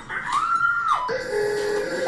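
A woman's long high-pitched scream, held for most of a second and dropping off at the end, followed by brief steady musical tones.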